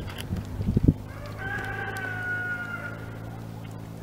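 A rooster crowing: one long, held call about a second in that sinks slightly in pitch toward its end. Before it come a few dull thuds of hooves on soft arena dirt.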